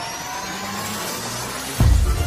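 Electronic intro sound effects: a rising whoosh with climbing tones, then a sudden deep bass boom near the end.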